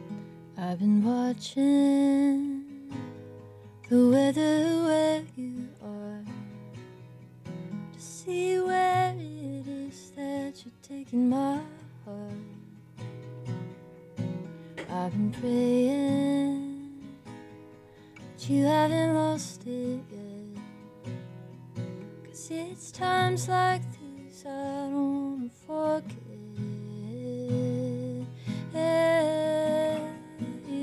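A woman singing a song over her own acoustic guitar, live. The guitar plays throughout, and the voice comes in separate sung phrases with short gaps between them.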